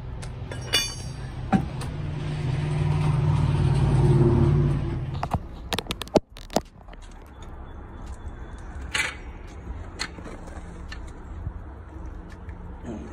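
A motor vehicle's engine rumble swells over about five seconds and then cuts off suddenly, followed by a few sharp metallic clicks and a clank of tools.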